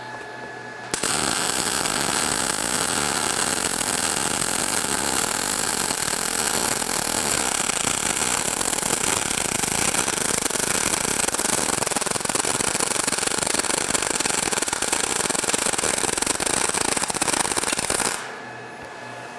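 MIG welding arc from an ESAB Rebel 235 on its S-MIG program, 0.045 wire at 250 inches a minute on 3/8 inch steel plate, starting about a second in: a dense, steady crackle with a heavy pop, the sound of a short-circuit-type arc running well short of spray transfer.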